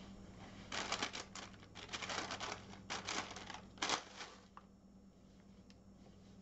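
Paper towels crinkling and rustling as they are handled, in a run of crackly bursts from about a second in until about four and a half seconds in.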